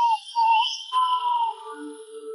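Thin, whistle-like warbling tones in short wavering pieces, a click about a second in, then steady ringing tones. These are the leftovers of a vocals-only separation of a live rock recording: instrument and feedback residue, with no singing.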